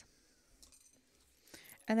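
Mostly quiet room tone with a few faint small clicks of hands handling things, then a word of speech near the end.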